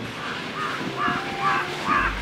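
A bird calling over and over, about four short calls in quick succession in the second half.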